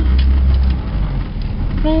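Car cabin noise while driving: a steady low engine and road rumble that swells briefly in the first second, with a few faint clicks. A voice says "oh" near the end.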